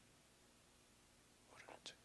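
Near silence, with a faint, short breathy sound at a handheld microphone about one and a half seconds in.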